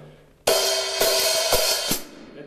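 Half-open hi-hat struck with a drumstick: four strokes about half a second apart, the cymbals ringing on between them in a continuous wash.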